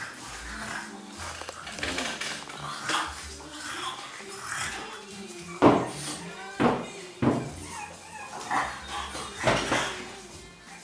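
French bulldog puppies giving a few short, sharp yaps in the second half, the first the loudest, over background music.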